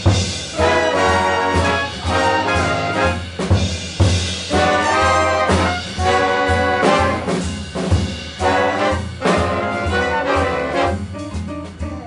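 Swing big band playing live: trumpet and trombone section with saxophones in short, punchy ensemble phrases over a walking upright bass and drum kit. The ensemble grows quieter near the end.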